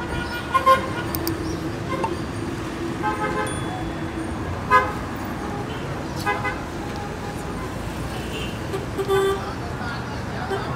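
Town street traffic: cars passing on the road, with short car-horn toots and people's voices in the background. The sharpest sounds are brief peaks near the start and about halfway through.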